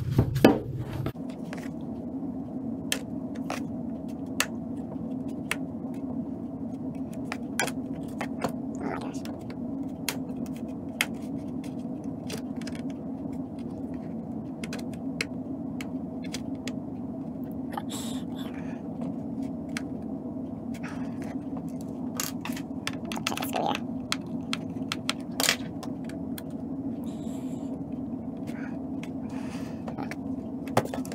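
A plastic pry tool working along the seam of a Lenovo ThinkPad T15's plastic case, with irregular sharp clicks and snaps from the case and its catches as it is prised apart, heard over a steady low hum.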